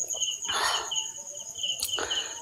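Crickets chirping: a steady high trill with a lower chirp pulsing about four times a second. A brief breathy rustle comes about half a second in.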